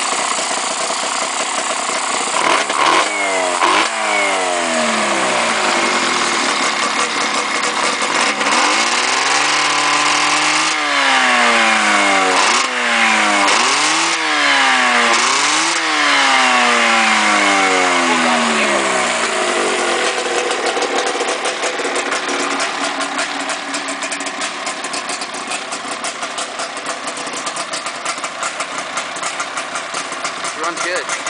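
Yamaha 540 air-cooled two-stroke snowmobile engine in a homemade go-kart, revved repeatedly so its pitch climbs and falls again and again, then settling to a steady idle for the last third.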